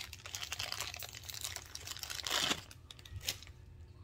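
A thin clear plastic packaging bag crinkling as it is pulled off a plastic phone-holder vent clip: a dense run of small crackles, with a louder rustle a little past halfway.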